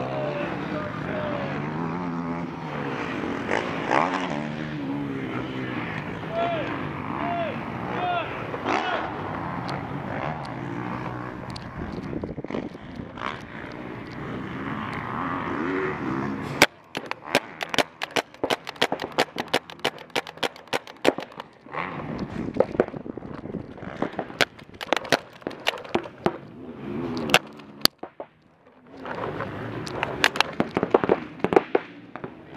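Overlapping voices for the first half. Then, from about 17 seconds in, paintball markers start firing: a quick, irregular series of sharp cracks from shots and paintballs striking the inflatable bunkers.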